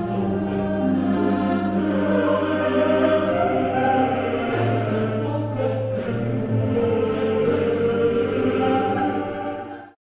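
Choral music: a choir singing sustained harmonies over held low tones, cut off abruptly near the end.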